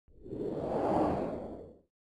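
Whoosh sound effect of a logo animation: one noisy swell that builds to a peak about halfway through and fades out shortly before the end.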